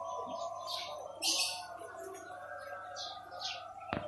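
Birds chirping in short, high calls, about five times, the loudest about a second and a half in. A sharp click comes at the very end.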